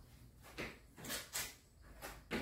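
A few soft thuds of sneakered feet landing on a thin exercise mat during skater hops and jumping jacks, two of them close together a little after a second in.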